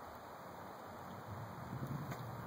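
Quiet background noise with no distinct event; a faint low hum comes in about halfway through.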